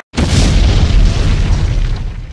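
Explosion sound effect: a sudden loud blast just after a brief silence, followed by a deep, sustained rumble.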